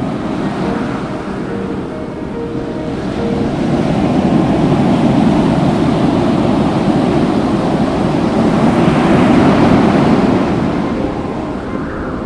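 Ocean surf washing onto a beach, a steady rush of water that swells to its loudest in the middle and eases off near the end, with faint music underneath.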